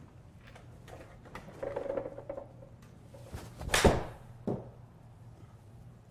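Golf iron striking a ball off a hitting mat: one sharp crack a little under four seconds in, followed about half a second later by a softer knock.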